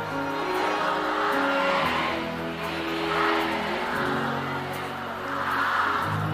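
Live band music at an outdoor forró concert: slow, held chords that change every second or so, with the noise of a large crowd swelling and fading over it several times.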